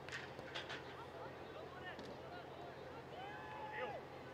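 Faint, distant shouts and calls from players on the pitch, several drawn-out, with a few short sharp sounds in the first second.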